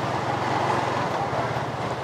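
Motor scooter running at a steady pace while being ridden: an even engine hum under a noisy rush of wind and road.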